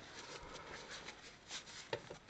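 Faint rustling of a paper towel being handled, with a couple of light taps near the end.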